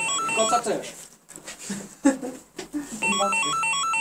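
Electronic apartment intercom call signal: a tune of beeping tones stepping between a few notes, heard for about half a second at the start and again in the last second.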